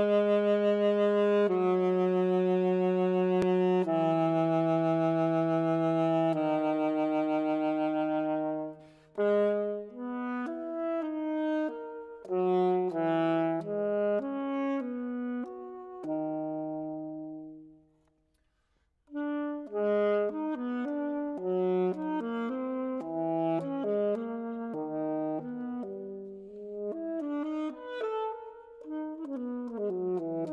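Solo alto saxophone playing: slow, long-held notes at first, then a quicker line of shorter notes, a brief break a little past halfway, and fast running passages after it.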